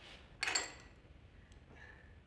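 Chopsticks clinking against ceramic tableware: one sharp clink with a short ring about half a second in, then a faint light clink near the end.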